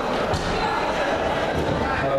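Voices and chatter echoing in a large sports hall, with two dull low thuds, one about a third of a second in and one near the end.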